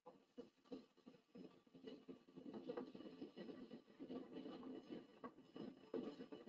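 Faint, irregular crackling noise from the soundtrack of a played video clip. It starts abruptly out of silence.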